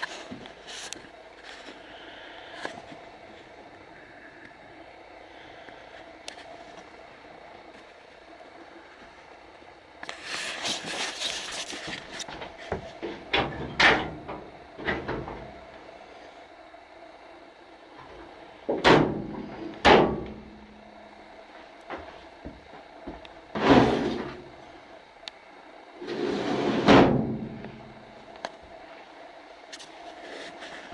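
Drawers and cabinet doors of a workbench being opened and shut. A sliding rush comes about a third of the way in, then a few sharp knocks, then four louder shuts a few seconds apart.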